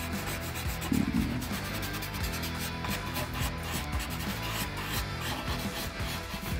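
A pencil scratching across textured paper in rapid short hatching strokes, a quick run of dry rasps, with a dull bump about a second in.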